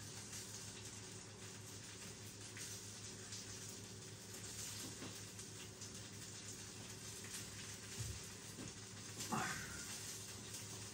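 Faint steady sizzle of a cheese-filled Käsekrainer sausage cooking on an electric grill plate, with a soft knock about eight seconds in.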